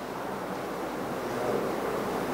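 A steady hiss of background noise with no speech, growing a little louder toward the end.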